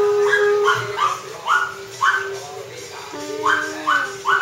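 A Pomeranian giving a string of short, high yips and whines, with a gap in the middle, over a steady held background tone.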